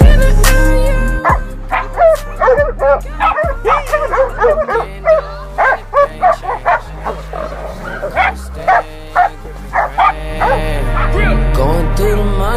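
Hunting dogs barking and yelping in quick, excited bursts over background music with a steady bass line; the barking dies away near the end, leaving only the music.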